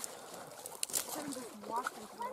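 Faint, indistinct voices, with a couple of brief clicks about a second in.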